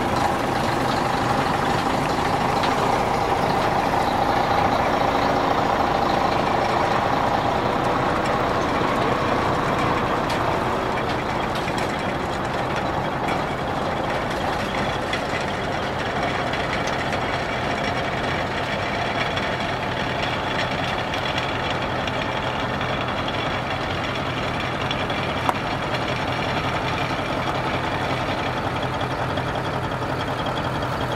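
Heavy diesel truck engines running steadily, with one short sharp click late on.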